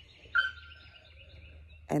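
A single high, steady animal call that starts suddenly about a third of a second in and is held for about a second and a half, over a faint low rumble.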